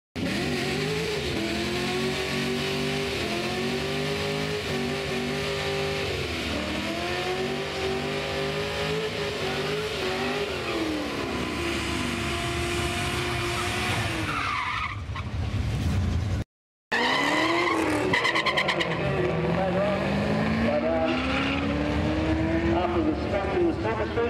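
Holden Commodore wagon doing a burnout: engine held at high revs, rising and falling, over loud tyre squeal. After a short break in the sound, a car accelerates down the strip, its engine note climbing steadily for several seconds.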